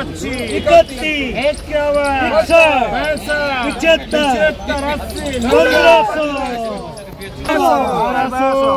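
Men's voices rapidly calling out bids at a live auction, a quick repetitive chant of prices with several voices overlapping. It eases off for a moment near the end before picking up again.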